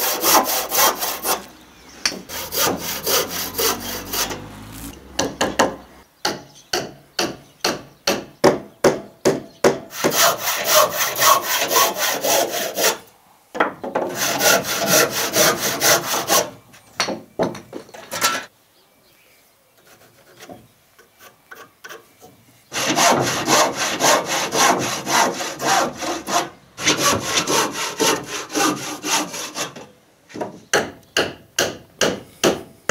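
Handsaw cutting softwood strut timber by hand: quick, regular push-pull strokes of about three a second, in several runs with a pause of a few seconds just past halfway.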